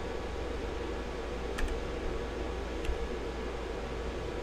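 Steady low hum and hiss of background noise, with two faint computer clicks about a second and a half and three seconds in, as a domain search is entered on a website.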